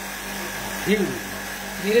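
Air conditioner running during refrigerant gas charging: a steady hum with fan noise.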